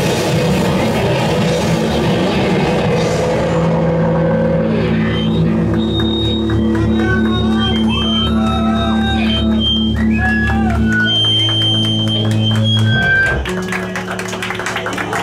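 Live rock band with drum kit, bass and distorted electric guitars playing loud. About four seconds in the cymbals and drums drop out, and the guitars and bass hold ringing, droning notes with high wavering tones over them. The held notes stop abruptly about a second before the end, as the song finishes.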